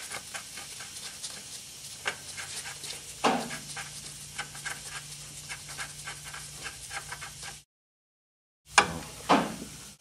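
Light metallic clicks and rubbing as a steel castle nut is spun by hand onto the stud of a lower ball joint in a steering knuckle. A low steady hum comes in about three seconds in, and the sound cuts out for about a second near the end.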